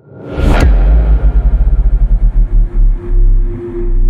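Cinematic intro sound effect: a sharp whoosh-and-hit about half a second in, then a loud, deep low sound that pulses rapidly before holding steadier near the end.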